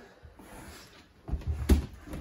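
A quiet first second, then a few dull thumps and a sharp knock about a second and a half in: someone moving about with gear on a wooden floor in a small room.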